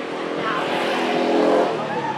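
A motor vehicle passing close by: its engine grows louder to a peak about a second and a half in, then starts to fade.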